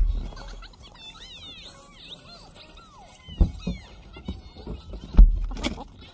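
Thumps and handling noise while a child's car seat harness is being buckled: a heavy thump at the very start, another about three and a half seconds in, and the loudest about five seconds in. In between come high, sliding squeals.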